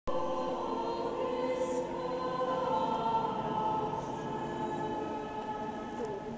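Choir singing long held notes during the Mass liturgy, carried across a large open square.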